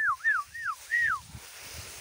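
A person whistling to call calves: a quick run of about four short falling whistles, each dropping in pitch, that stop a little over a second in.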